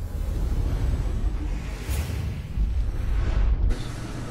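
TV broadcast logo-transition sound effect: a deep rumbling whoosh with music under it. It cuts off abruptly near the end.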